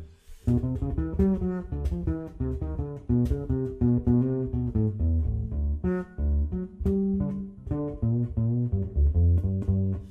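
Marcustico acoustic bass guitar played solo with the fingers, a steady run of separately plucked jazz notes, several a second, with a brief pause just after the start. It is picked up through its newly fitted piezo pickup.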